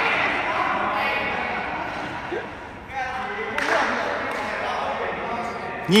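A sepak takraw ball being kicked during a rally, over the voices of spectators echoing in a large indoor hall.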